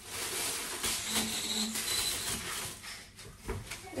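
Rustling and light knocks of groceries being handled and put into a kitchen cupboard.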